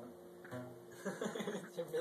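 Guitar strings picked by a beginner trying a chord, the notes sounding weak because the fretting fingers are not pressing the strings down hard enough. The playing gets busier about halfway through.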